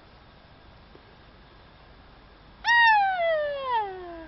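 A woman's loud, shrill tennis-style scream let out on her golf stroke, starting about two and a half seconds in and sliding steadily down in pitch over about a second and a half.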